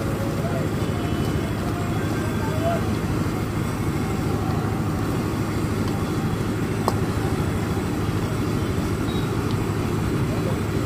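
Steady low roar of a gas burner firing under a wok of boiling chicken soup, with one sharp tap about seven seconds in.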